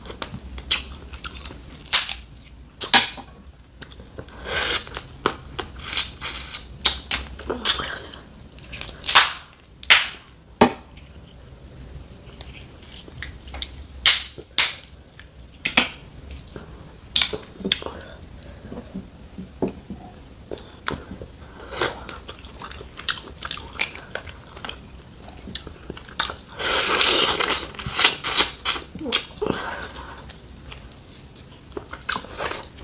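Close-miked chewing and mouth sounds of eating boiled snow crab meat, broken by sharp snaps and cracks as the crab leg shells are broken apart by hand. A longer crackling crunch comes near the end.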